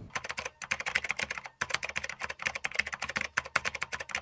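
Keyboard typing sound effect: rapid clicking keystrokes, about eight a second, with a short break about one and a half seconds in.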